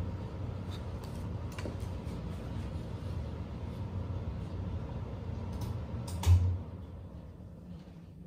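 Low rumble with scattered small knocks and clicks, then one loud thump about six seconds in, after which it goes quieter.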